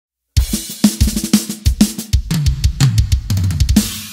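Opening of a norteño huapango: drum-kit hits with snare, bass drum and cymbals over a moving bass line, starting about a third of a second in after a brief silence.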